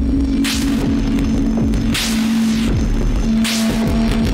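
Downtempo music from analog modular synthesizers: a held drone with a swell of noise about every second and a half over a low pulsing bass, with short falling tones in the low end.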